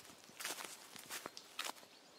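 Faint footsteps: a few soft, uneven steps of someone walking away through woodland.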